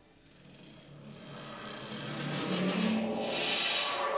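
Strings inside a grand piano being rubbed and scraped, a rasping noise that swells over about three seconds to its loudest near the end, with low string tones ringing under it.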